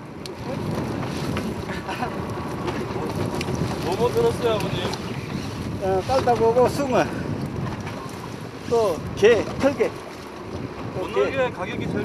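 Steady low wind rumble on the microphone on an open fishing boat. Short bursts of talk sit over it about four, six and nine seconds in.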